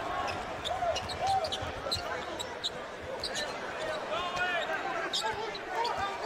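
A basketball dribbled on a hardwood court, with short, scattered high-pitched sneaker squeaks over the steady noise of an arena crowd.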